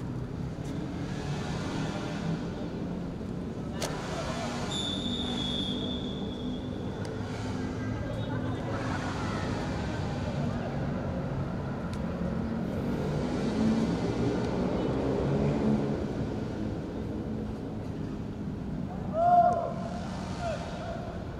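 Shouts and calls from players on a football pitch over a steady background din. A referee's whistle sounds about five seconds in as one steady blast of about two seconds, and a loud shout comes near the end.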